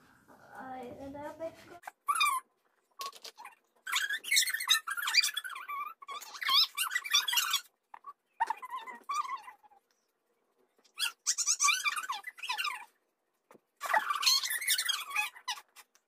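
High-pitched, squeaky voice sounds in several short bursts, separated by moments of silence.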